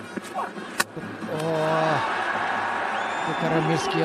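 A cricket ball hits the stumps with one sharp crack about a second in: the batter has missed a big swing and is bowled. A stadium crowd then cheers, the noise swelling and holding.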